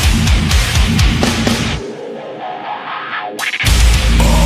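Deathcore song with distorted guitars and drums. About halfway through the bass and drums drop out, leaving a thinner guitar part for nearly two seconds. A short swell then brings the full band crashing back in just before the end.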